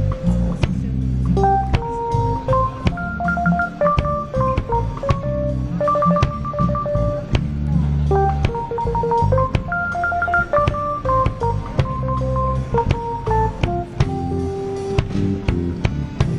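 Instrumental music: a keyboard melody of held notes stepping up and down over a steady drum beat and bass.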